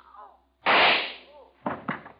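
Gunshot sound effect from a 1945 radio drama: a pistol fires once, loud and sudden, about half a second in, and the report dies away over most of a second, followed near the end by two fainter sharp knocks. The old broadcast recording cuts off all the high treble.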